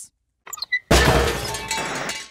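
A few faint high ticks, then a sudden loud crash about a second in that rings on and fades over about a second.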